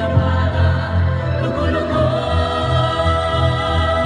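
A group singing live through microphones and a PA: solo voices with a choir of students, over music with a pulsing bass line. About halfway through, the voices settle into long held notes.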